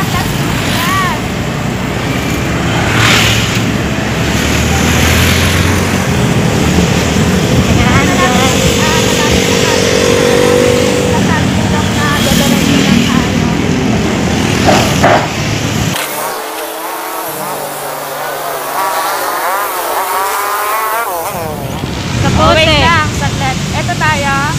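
Motorcycle ride in city traffic: the engine and road noise buried under heavy wind rush on the microphone. About two-thirds of the way through, the rumble cuts off suddenly to quieter street sound with people's voices.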